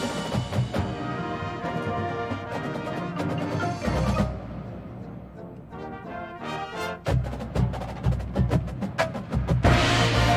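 Drum and bugle corps playing its field show: brass chords over front-ensemble mallet percussion and drums. The music thins to a quieter passage about halfway through, then the full corps comes back in louder about seven seconds in.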